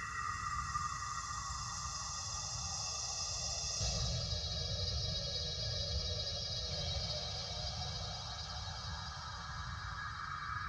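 Ambient synthesizer pad from keyboard sound modules: sustained, beatless keyboard tones that shift to a new chord about four seconds in.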